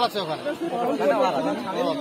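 Spectators' voices: people talking over one another close by, with no other sound standing out.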